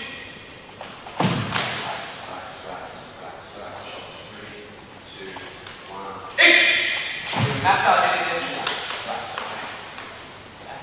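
Two heavy thuds from a fast karate technique being demonstrated, about a second in and again about seven seconds in, echoing in a large hall. A sharp vocal burst comes just before the second thud, with voices in between.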